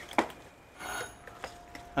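Doorbell ringing: a short, bright ring about a second in, followed by a faint steady tone.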